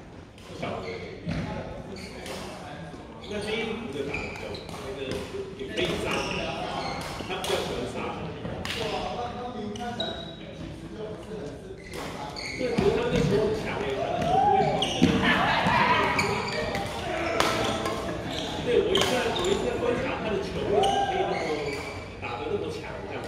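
Badminton rackets striking a shuttlecock in a rally, with repeated sharp hits and shoes on a wooden gym floor, in a large hall.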